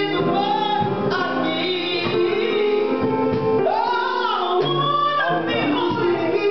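A woman singing a gospel song through a handheld microphone, in long held notes that slide between pitches, over a steady instrumental backing.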